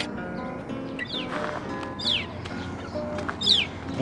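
Acoustic guitar music fading out under a songbird's sharp descending chirps, three of them about a second apart.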